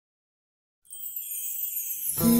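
Silence for almost a second, then a faint, high shimmering chime-like tone that slides slightly downward, leading into background music.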